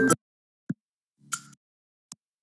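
Cartoon DVD menu music cutting off abruptly into dead digital silence as the menu page changes. The silence is broken by a single short pop about two-thirds of a second in and a brief chime-like blip a little over a second in.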